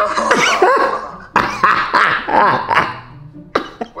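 Men laughing hard in several bursts.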